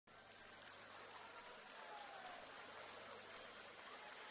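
Near silence: faint steady hiss of hall room tone, with a few faint ticks.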